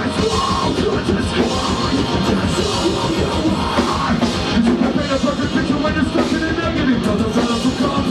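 Live metalcore band playing loud and dense, with fast drumming, heavy guitars and vocals.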